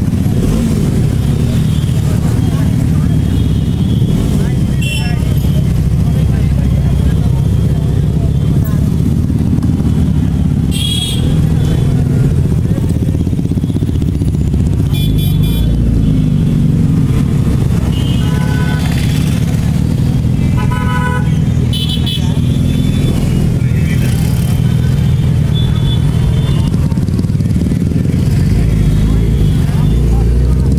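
Motorcycle engines running at low speed in dense street traffic, a steady low rumble. Several short vehicle-horn toots sound in the second half.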